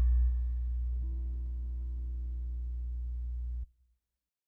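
A steady low electronic hum with a few faint higher tones, dropping a little in level just after the start and cutting off abruptly near the end.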